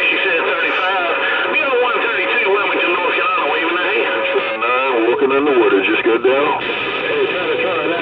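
A Uniden Bearcat CB radio tuned to channel 28 plays a strong incoming signal: garbled, warbling voices, thin and tinny, over a steady high whistle.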